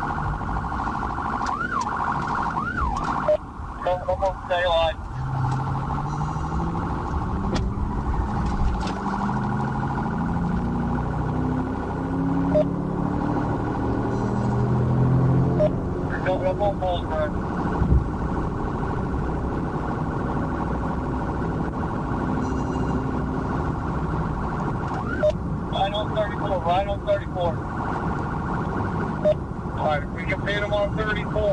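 Police car siren sounding throughout, breaking into fast warbling yelps a few times, over constant road noise from a pursuing cruiser; a lower note climbs in steps through the middle.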